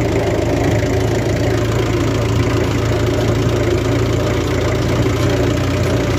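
Old tractor's engine running steadily under way, heard from the driver's seat.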